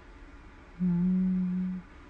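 A man's short closed-mouth hum on one steady low note, lasting about a second and starting a little under a second in.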